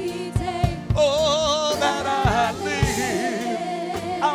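Live gospel worship singing: a group of women's voices with vibrato over band accompaniment, with regular low drum thumps.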